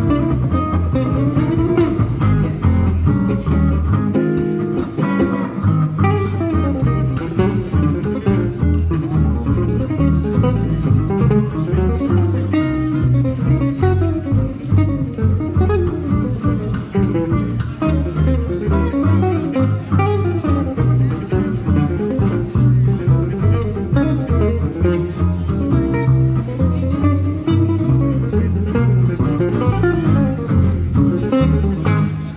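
Live jazz manouche (gypsy jazz) played by a trio: two acoustic guitars and an upright double bass, with steady moving bass notes under the guitars.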